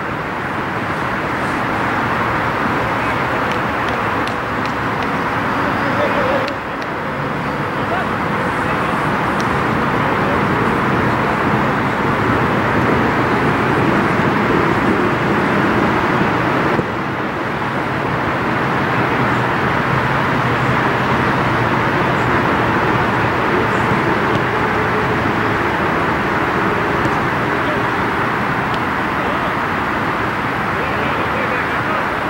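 Loud, steady outdoor noise with no clear pitch, the kind of wash that traffic or wind leaves on a field recording, with the voices of players on a soccer pitch mixed in. The level drops suddenly twice, about six seconds in and again about seventeen seconds in.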